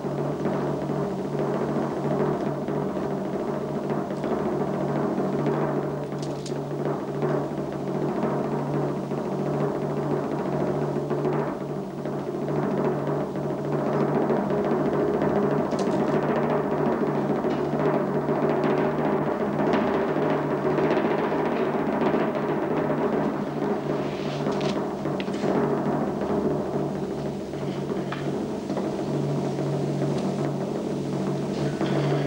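Suspenseful background music carried by a sustained timpani roll, steady throughout.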